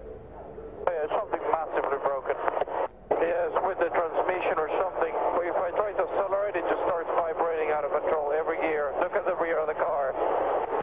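Speech over a race team's two-way radio, the voice thin and cut off at top and bottom. It starts about a second in and breaks off briefly near three seconds as the transmission is keyed again.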